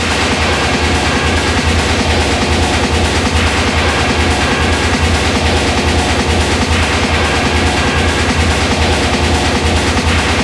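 Hard techno track playing: a fast, unbroken pulse with a dense, noisy, machine-like texture.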